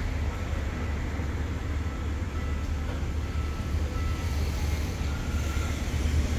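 Passenger train rolling slowly along a station platform, a steady low rumble throughout.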